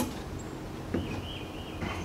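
Quiet workshop room tone with a sharp click at the start, then a faint thin wavering squeak about a second in that lasts under a second.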